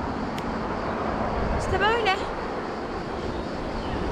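Wind buffeting the microphone over a low, steady rush of sea waves. A short rising-and-falling voice comes in about two seconds in.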